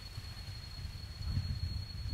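Quiet outdoor background during a pause in speech: a low rumble with a faint, thin, steady high-pitched whine.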